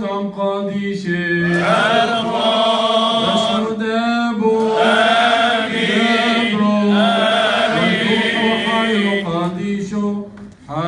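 Male clergy chanting a Syriac Orthodox liturgical hymn for the anointing of the dead: a slow melody with long held, ornamented notes, in phrases with brief pauses between them.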